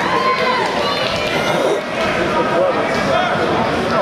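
Crowd of spectators, many voices shouting and talking over one another at a steady, fairly loud level.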